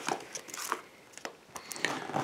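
Rummaging through CDs and their packaging by hand: scattered small clicks and rustles of plastic cases and wrappings.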